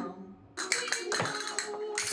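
Castanets clicking in quick, dense runs, starting about half a second in after a brief lull.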